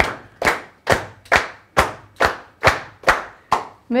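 Hands clapping a bar of steady eighth notes in time, about nine even claps at a little over two a second, right after a spoken count-in.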